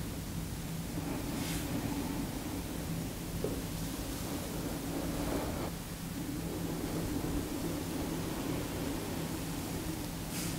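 Steady faint hiss with a low hum underneath: background room tone with no distinct sound events.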